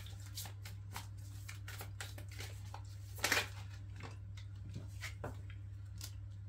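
A tarot deck being shuffled by hand: a run of soft flicks and taps of cards, with one louder swish of cards about three seconds in. A steady low hum runs underneath.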